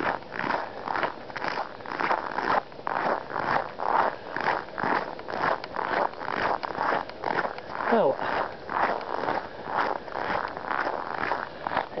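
Footsteps crunching on a snow-covered path at a steady walking pace, about two steps a second.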